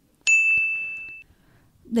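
A single high, bright bell ding that rings out and fades over about a second, used as a transition chime between segments of the show.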